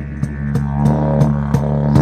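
Didgeridoo played in a steady low drone with shifting overtones, punctuated by sharp rhythmic accents about three times a second.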